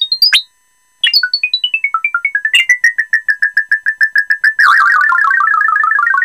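Rapid stream of short synthesizer notes sent over MIDI by a PIC12F675 circuit reading two CdS photocells, the pitch following the light falling on the cells. The notes step down from high to middle pitch, stop for about half a second, step down again, repeat on one pitch at about seven a second, and from near five seconds in turn into a faster, denser warble of overlapping notes.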